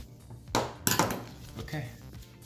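Two sharp knocks about a third of a second apart, around half a second in: a fixed-blade knife being set down on a wooden tabletop.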